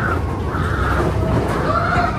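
Roller-coaster riders whooping and screaming, with a louder whoop near the end, over the steady low rumble of the Big Thunder Mountain Railroad mine train running on its track.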